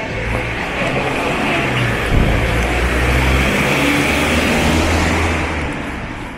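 A road vehicle passing close by on a city street, its sound swelling over the first few seconds and dropping away near the end.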